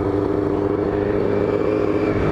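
Sport motorcycle engine running at steady revs while the bike is ridden, heard from the rider's position, with an even engine note throughout.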